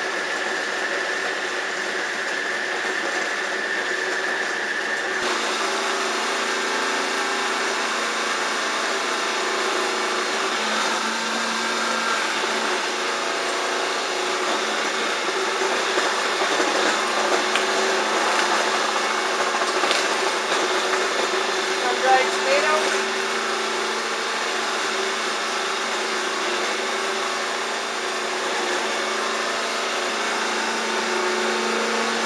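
Small electric food processor running steadily as vegetables are pushed down its feed tube and chopped. The motor sound shifts about five seconds in and grows louder for several seconds past the middle, with a knock near the end of that louder stretch.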